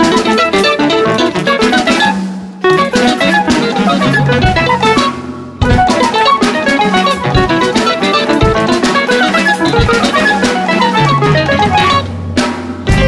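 Instrumental passage of a band song: guitar over a drum kit, with short breaks in the playing about two and a half and five and a half seconds in.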